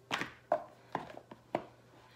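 A handful of light, sharp taps and clicks, about five in a second and a half, as tarot card decks and their boxes are handled and set down on a table.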